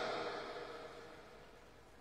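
A pause in a man's speech over a microphone and loudspeakers: the echo of his last words fades away over about a second, leaving only faint background hiss.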